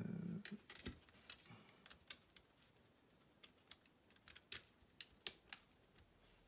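Light plastic clicks and taps from a Sharp PC-1251 pocket computer's plastic case parts being handled and pressed together: about a dozen irregular, faint clicks, the loudest near the end.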